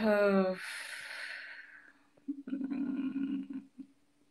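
A woman's voice finishing a spoken word, followed by a fading breath. About two and a half seconds in comes a short, even vocal sound lasting about a second.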